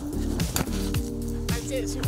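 Music with a steady beat: deep kick-drum thuds that slide down in pitch about twice a second, sharp hits, and a held chord.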